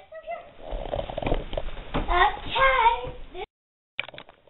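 Children's voices, with a high child's voice rising and falling from about two seconds in. The sound cuts off abruptly half a second before the end.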